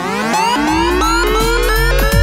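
Electronic music: a synth sweep climbing steadily in pitch, with a deep bass swelling in underneath about half a second in.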